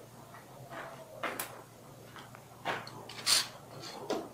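Steel bar clamp being handled and set against the edge of a metal workbench: a few separate clacks and scrapes, the loudest shortly before the end, over a faint low hum.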